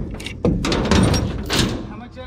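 Heavy chain clanking and knocking against a wooden trailer deck: a sudden rattle starts about half a second in, with several sharp knocks, and dies away near the end.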